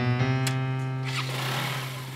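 Background music of sustained keyboard chords. About half a second in, a single sharp click as a Honda scooter's stand is kicked up. After about a second, a steady rushing noise comes in under the music.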